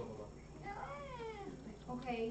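A cat meowing once, a drawn-out call of about a second that rises and then falls in pitch, with another meow starting just at the end.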